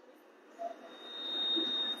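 A faint, steady high-pitched tone that starts about a second in and lasts about a second, over low room noise.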